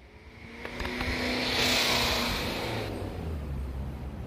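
A car passing by: its sound swells over about a second and a half, peaks about two seconds in, then fades away.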